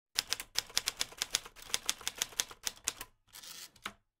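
Rapid typing, about seven sharp key clicks a second, then a short rasping slide and a final click near the end.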